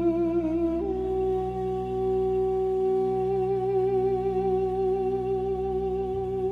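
Background music: a single held melody note with a slight waver, stepping up in pitch about a second in and then sustained, over a steady low drone.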